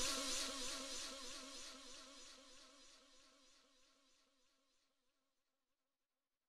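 The closing synth tone of a hard house track fading out, its pitch wavering in a steady wobble. It dies away over about the first two and a half seconds.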